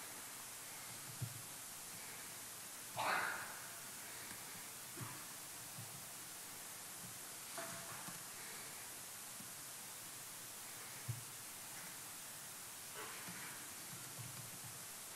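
Steady low hiss of a talk's microphone feed with no speech, broken by a few faint brief knocks and one louder short noise about three seconds in.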